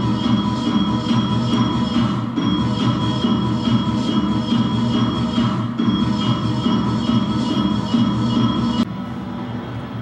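Music playing from a two-screen video installation's soundtrack: several held steady tones over a low pulsing rumble, cutting off suddenly about nine seconds in.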